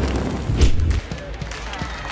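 Rushing hiss of water from a toy fire engine's water cannon, with a deep thud about half a second in. The rush stops about a second in, leaving softer low knocks.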